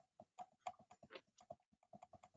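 Faint computer-keyboard typing: a quick, irregular run of light key clicks, several a second.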